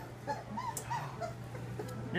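Three-week-old Labrador puppies whimpering: a string of short, high, rising-and-falling squeaks, most of them in the first second, over a steady low hum.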